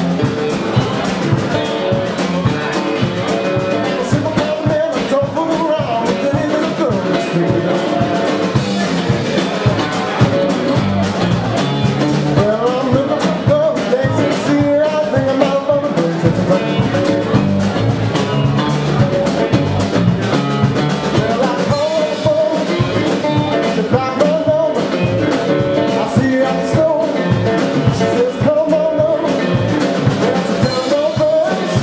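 Blues band playing live: resonator guitar, electric guitar and drum kit, with a man singing.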